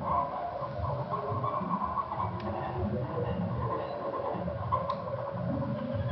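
Tarhu, a bowed spike fiddle, played with long bow strokes: a sustained drone with steady high overtones over a rough, wavering low register.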